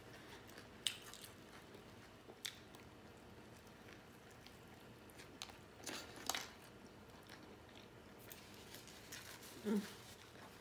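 Faint, close chewing of a sub sandwich, with a few short sharp mouth clicks and bites scattered through, the strongest about six seconds in.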